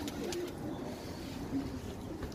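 Domestic pigeons cooing, a few short low coos.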